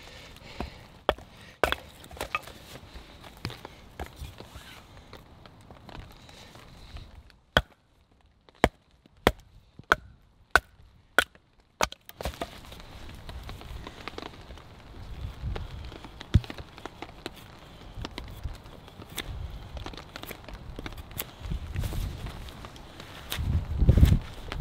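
A heavy survival knife chopping and splitting wood: a series of sharp, separate knocks at an uneven pace, with a quicker run of strikes around the middle.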